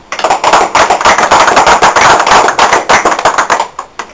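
A small group clapping hands, loud and close, for about three and a half seconds before stopping short.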